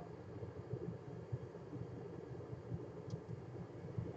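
Quiet room tone: a faint steady low hum with a light click about three seconds in.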